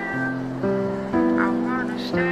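Background music: held chords that change about every half second, with a high voice sliding in pitch over them.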